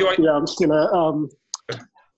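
A man talking over a video call, with a couple of short clicks near the end.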